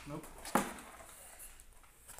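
A single sharp knock or click about half a second in, over a faint steady low hum.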